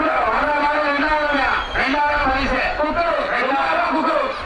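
A man speaking continuously, in the manner of a commentator.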